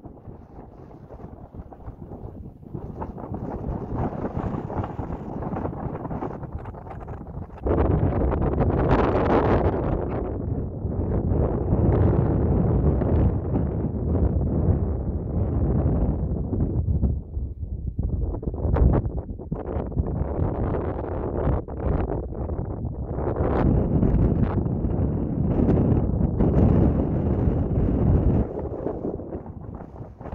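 Wind buffeting the microphone in gusts: a low, uneven noise that is lighter at first, jumps up suddenly about eight seconds in, eases briefly a little past the middle, then picks up again.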